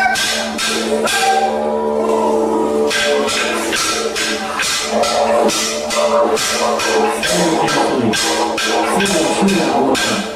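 Didgeridoo holding a steady low drone under sharp rhythmic clicks of percussion, about three beats a second, accompanying a dance. The beats stop for about a second and a half, two seconds in, then resume.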